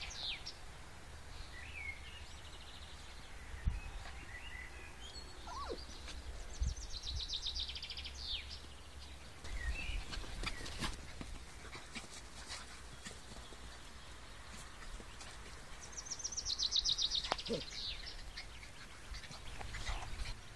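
A songbird sings a short, fast, high trill that ends in a quick downward sweep, three times: at the start, about seven seconds in and near the end. A steady low rumble and a few faint clicks lie underneath.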